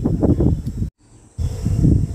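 Low, gusty wind rumble on an outdoor microphone, cutting out abruptly for about half a second around the middle.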